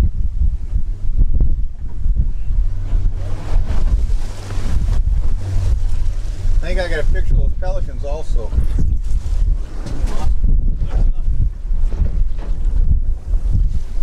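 Heavy wind buffeting on the microphone over the steady low running of a 115 hp outboard motor as the boat moves through the water. About halfway through, a voice calls out briefly.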